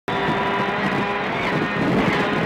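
Ford Focus WRC rally car's turbocharged four-cylinder engine running hard at speed, heard from inside the cabin, with a steady, high engine note.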